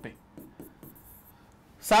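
Faint scratching and light taps of a pen writing and circling on an interactive touchscreen board, with a few soft clicks and a brief hiss.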